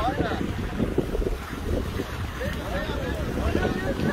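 Wind buffeting the microphone in a steady low rumble, with faint voices in the background now and then.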